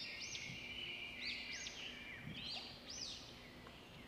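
Faint bird calls: a short high whistled phrase that rises and falls, repeated about every one and a half seconds, over a steady faint hiss.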